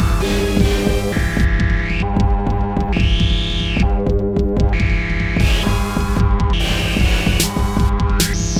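Electronic music played on analog and modular synthesizer hardware: a dense low bass with many short repeating notes under layered sustained synth tones. A high synth sweep rises and falls about every two seconds, and a long falling glide comes near the end.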